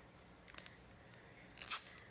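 A short strip of duct tape ripped off the roll near the end, a brief loud rasp, after a couple of faint clicks.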